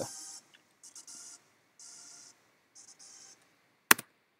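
Quiet playback of a Logic Pro X music project, its tracks turned down by volume automation: soft swishes of hiss about once a second over faint synth notes. A single sharp click near the end.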